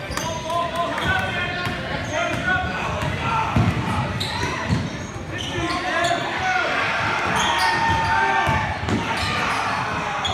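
A basketball dribbled on a hardwood gym floor during a game, its bounces echoing in a large gym amid the voices of players and spectators.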